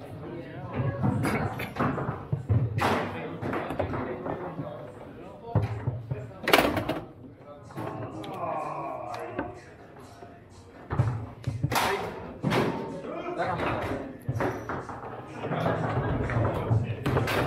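Foosball match in play: the ball cracking off the plastic men and the table walls, with rods clacking and thudding against the bumpers in irregular bursts, the hardest shots about six and a half and twelve seconds in. Voices and music in a large hall run underneath.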